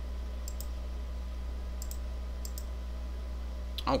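A few faint, short computer mouse clicks, some in quick pairs, over a steady low electrical hum.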